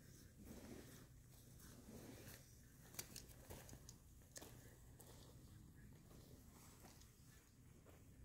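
Near silence: faint outdoor ambience with a few soft clicks and rustles, the clearest about three seconds in.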